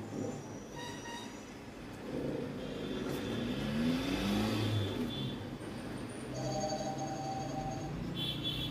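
A motor vehicle engine passing, swelling in loudness with its pitch rising around the middle and fading after about five seconds. A steady higher tone sounds near the end.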